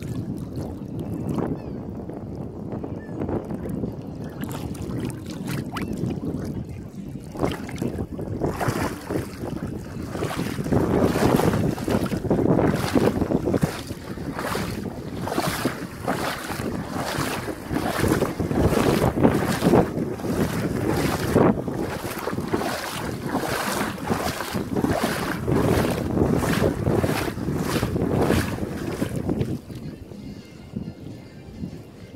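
Wind on the microphone over shallow sea water, then, from about eight seconds in, a steady run of splashing steps, about one to two a second, as someone wades through ankle-deep water.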